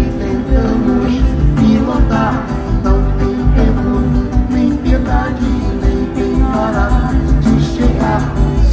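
Live amplified band music: acoustic guitar and drum kit with a sung melody in short phrases over a strong low pulse.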